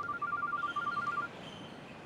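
Mobile phone ringing with an electronic trilling ringtone, two close pitches beating rapidly, that stops about a second in.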